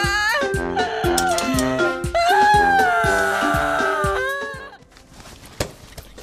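A woman's exaggerated, drawn-out wailing sobs, wavering in pitch, over upbeat comic music with a plucked beat. Both stop after about four seconds, and a single short knock comes near the end.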